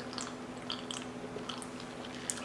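Faint wet mouth clicks and swallowing of someone drinking from a plastic cup, a few small ticks scattered through, over a steady low hum.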